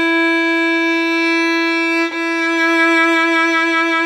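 Violin playing one long held note with whole bows. There is a bow change about two seconds in, and in the second stroke the note takes on a slight regular waver as vibrato is added on top of the plain tone.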